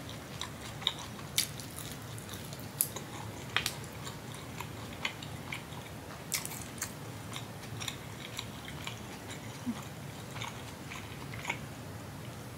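Close-miked chewing with the mouth closed: irregular wet mouth clicks and smacks, a few of them sharply louder, over a faint steady low hum.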